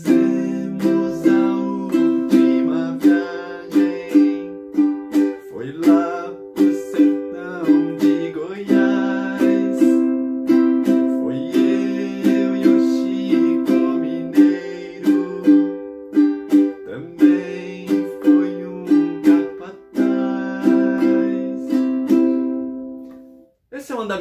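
Ukulele strummed in a pop rhythm (down, down, up, up, down), changing among C, F and G chords, with a man singing the melody over it. The strumming stops just before the end.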